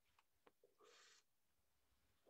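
Near silence: room tone with a few faint clicks and one brief, faint hiss about a second in.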